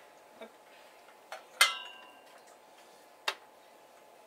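Handling noises from a presenter working a device at a lectern: a few sharp clicks and taps. About a second and a half in, one louder clink rings briefly.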